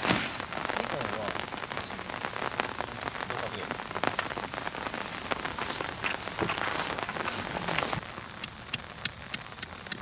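Light rain pattering steadily, mixed with the rustle of a heavy canvas tent being unfolded and dragged over grass. Near the end, after a drop in level, a run of light sharp ticks comes about three times a second.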